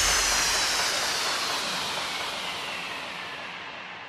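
Electronic white-noise sweep effect closing out a grime/dance track: a hissing wash that slides down in pitch and fades out steadily once the beat has stopped.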